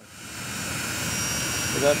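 A workshop exhaust fan running steadily, with the thin, steady high whine of a handheld rotary tool spinning. The sound swells in over the first half second.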